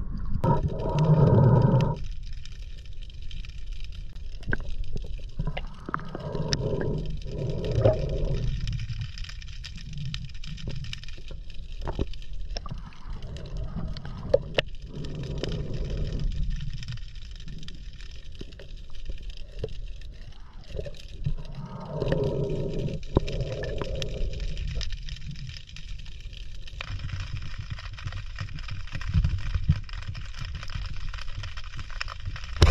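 Underwater sound through a submerged camera while freediving: a steady low rumble with muffled gurgling that swells several times, and a few sharp clicks.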